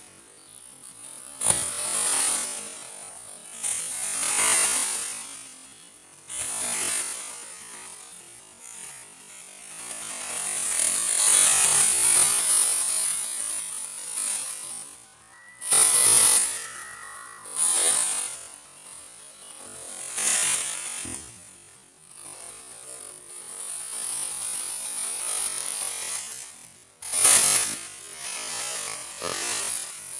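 Irregular scratching and rubbing noises in bursts of one to two seconds each, with a short thin steady tone about sixteen seconds in.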